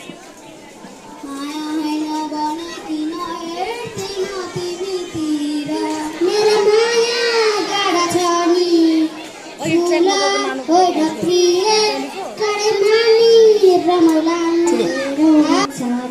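A child singing solo into a microphone: a single young voice holding long, slightly wavering notes, starting soft and growing louder about halfway through.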